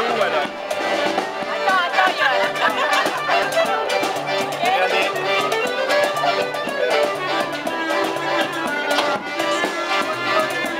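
Small acoustic street band playing live: violin and clarinet carrying the tune over a double bass, with people talking over it.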